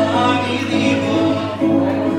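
A group of voices singing a song live on stage, accompanied by acoustic guitar.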